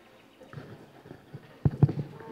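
Handling noise from a corded handheld microphone being passed from one person to another: a few soft bumps, then two or three loud thumps close together near the end.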